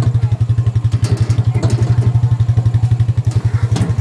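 ATV engine running steadily as it tows a small trailer, a low, rapid, even pulsing.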